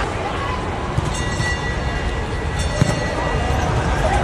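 Volleyball rally sounds over a steady low rumble in a large indoor hall: a sharp slap of the ball being hit about three seconds in. Before it there is a drawn-out high squeak, typical of sneakers on the court, and faint voices.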